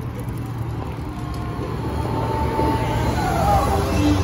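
Outdoor traffic noise: cars moving through a parking lot with a steady low rumble that grows a little louder toward the end.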